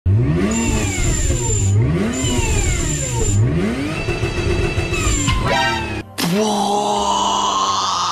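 BMW car engine revved three times in the first five seconds, its pitch climbing and then holding each time, followed by a quick rising run. A brief drop about six seconds in gives way to a steady, held musical tone.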